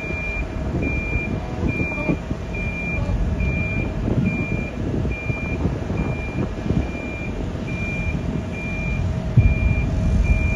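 A vehicle's reversing alarm beeping steadily, a single tone a little more than once a second, over the low rumble of a running engine.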